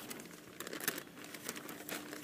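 Clear plastic packaging crinkling in irregular crackles as it is handled.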